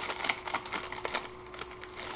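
Plastic instant-ramen wrapper and soup sachet crinkling as they are handled: a scatter of small irregular crackles.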